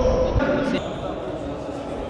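A futsal ball bouncing and being kicked on a sports-hall floor, with voices, in an echoing gym. The sound changes character a little under a second in.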